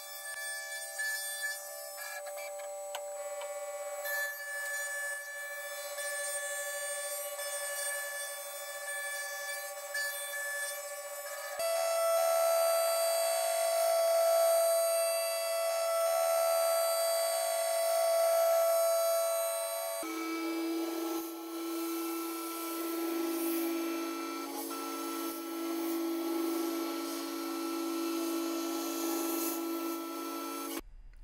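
Sped-up sound of a CNC mill machining aluminium: the spindle and cutting whine is raised in pitch into steady high tones that jump at each edit. About two-thirds of the way in, the tones drop by about an octave.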